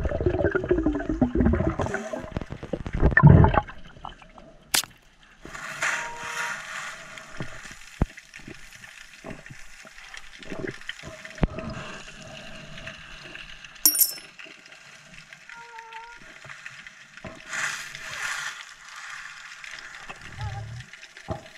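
Underwater bubbling and gurgling, loudest and densest in the first few seconds. After that it settles to a quieter wash with two hissing stretches and a few sharp clicks.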